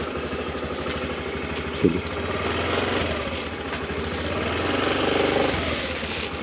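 Small petrol engine of a gearless scooter running as it pulls away slowly, its note rising about four seconds in and dropping back shortly before the end.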